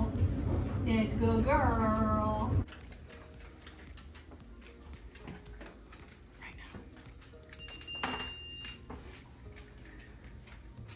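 A woman's high, sing-song voice to the dog in the first couple of seconds. Then, after a cut, light clicks and a steady high electronic beep about eight seconds in, lasting around a second: the tone from the dog's remote training collar, her cue to come back to the handler.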